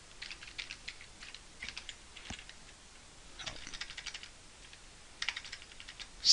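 Computer keyboard typing: keys clicking in four short runs of several quick keystrokes, with pauses between.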